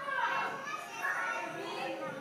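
Young children's voices and a woman's voice talking, with children playing in the background.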